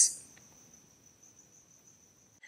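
Near-silent room tone with a faint, steady, high-pitched whine: a single thin tone held without a break.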